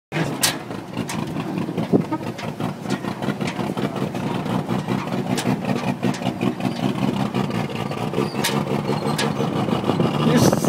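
1951 International truck's engine, fitted with a 3/4 race cam, running with an uneven, pulsing beat. A few sharp clicks come over it.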